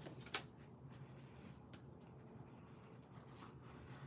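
Faint handling of cardstock on a desk: paper sliding and tapping, with one sharp tap about a third of a second in and otherwise only low room tone.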